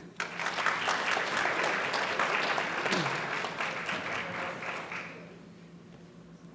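Audience applauding, the clapping starting just after the start and dying away about five seconds in.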